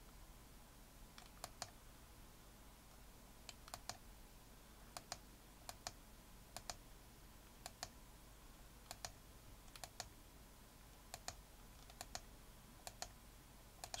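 Computer mouse's left button clicking about a dozen times, each a quick press-and-release double click, roughly one a second, over a faint steady hum.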